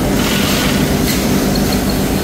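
Loud, steady running noise of food-factory machinery, an even rush with a low hum under it and no breaks.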